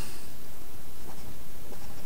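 Marker writing a word on paper, over steady background hiss and low hum.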